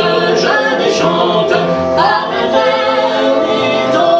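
A woman singing a slow melody accompanied by a bowed nyckelharpa, whose steady drone tone sounds under the voice.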